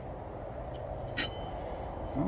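A light metallic clink with a short ring a little after a second in, from a steel chain sprocket being handled against the wheel. A low steady hum fades out about a second in.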